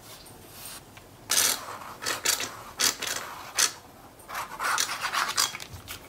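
A nearly empty bottle of liquid craft glue being squeezed, its tip drawn across patterned paper, making irregular short scratchy bursts.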